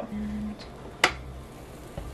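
A single sharp click about a second in as the plastic lid of an electric waffle iron is shut over a sandwich, with a brief hum from a voice just before.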